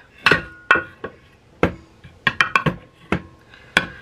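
Measuring cups and kitchen utensils being handled on a wooden counter: about ten sharp, irregular clinks and knocks, the first couple ringing briefly.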